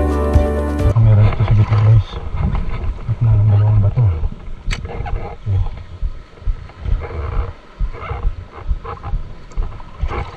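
Background music cuts off about a second in. Then comes a rough, uneven low rumble of waves washing over shore rocks, with wind buffeting the microphone. A single sharp click sounds near the middle.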